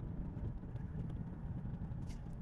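A car driving on an open road, heard from inside the cabin: a steady, low rumble.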